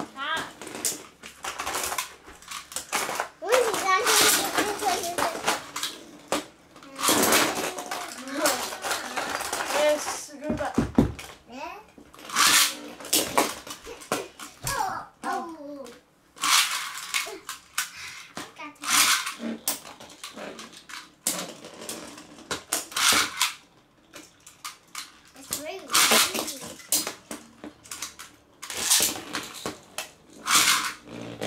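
Children's voices talking and exclaiming over Beyblade spinning tops clattering in a shallow plastic tub, with several short, loud bursts of noise.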